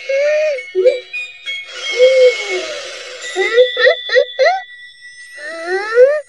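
Cartoon soundtrack: a character's wordless cries and wails over background music, with a hissing whoosh sound effect about two seconds in.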